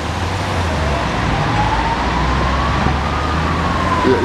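Steady city traffic rumble with a faint siren, one slow wail rising to a peak about three seconds in and then falling.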